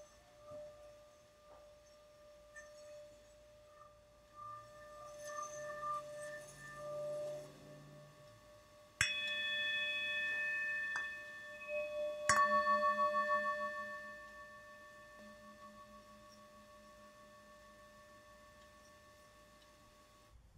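Tibetan singing bowl struck twice, about nine and then twelve seconds in, each strike ringing on in several overtones and slowly fading, the second with a wavering beat. Before the strikes, softer lingering ringing tones.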